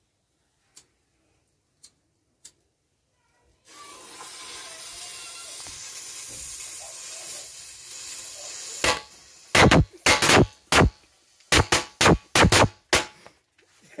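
Firecracker going off: a lit fuse hisses steadily for about five seconds, then a rapid, irregular string of about a dozen loud bangs over some four seconds.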